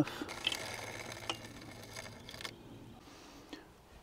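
A bicycle chain breaker tool being worked on a road bike chain: a few faint, short metallic clicks over a steady hiss. The hiss stops after about two and a half seconds.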